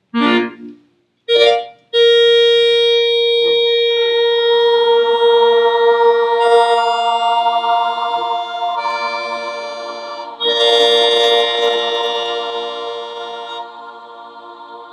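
An electronic keyboard holds sustained organ-like chords, with the chord changing every few seconds, while the students sing held notes along with it to tune the harmony and pitch. The chords start about two seconds in and grow gradually softer near the end.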